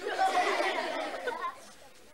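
A jumble of voices, loudest in the first second and a half, then dropping away.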